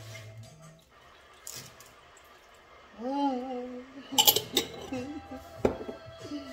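Kitchen clinks of a glass jar and utensil being handled over a slow cooker: a quick run of sharp clinks about four seconds in and a single louder knock near the end. A short voice-like note comes just before the clinks, over a television playing low in the background.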